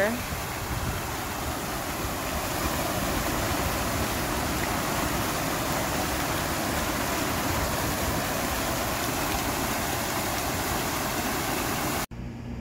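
Fountain jets splashing into a pool basin: a steady rush of falling water that stops abruptly at the very end.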